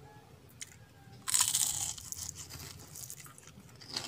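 Biting into a crispy fried dilis (small anchovy) in a flour-and-cornstarch coating: one loud crunch about a second in, then quieter crunching as it is chewed.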